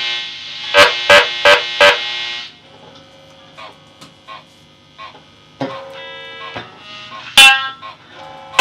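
Amplified Gibson ES-175D hollow-body electric guitar: four sharp struck chords in quick succession that ring on, then a few quiet plucks, a struck chord ringing for about a second near the middle, and another sharp strike near the end.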